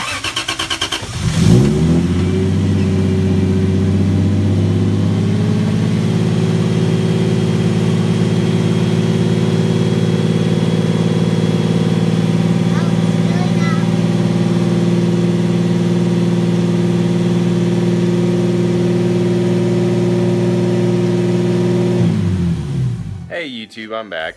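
Lexus IS300's turbocharged 2JZ-GE inline-six cranked by the starter, catching after about a second and a half with a brief rev, then idling steadily; it is switched off about two seconds before the end, the note winding down.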